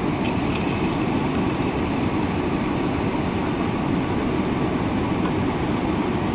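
Steady rumble and rushing hiss of cooling tower fans and chiller plant machinery, with a faint steady high whine.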